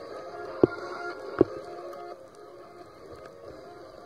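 A steady hum of several held tones, faintly musical, fading after about two seconds. Two sharp clicks about three-quarters of a second apart near the start are the loudest sounds.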